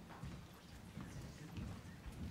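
Faint, irregular knocks and clicks over a low room murmur.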